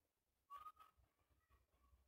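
Near silence: room tone, with one faint, short whistle-like chirp about half a second in.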